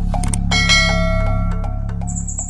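Intro music with a steady beat over a low drone, and a bright bell chime about half a second in that rings on for about a second, like a subscribe-button notification bell sound effect.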